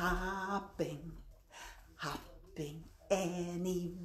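A woman singing a children's freeze-dance action song with no accompaniment, in short phrases with long held notes.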